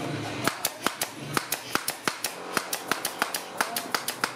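Pneumatic nail gun firing nails in quick succession through the metal ferrule of a paint brush into its wooden handle. Sharp clacks come about five a second, starting about half a second in.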